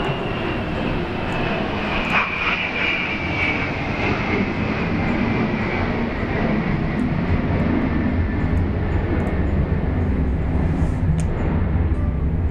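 Loud, steady mechanical rumble carrying a high whine that falls slowly in pitch over the first few seconds. The low rumble grows stronger through the second half.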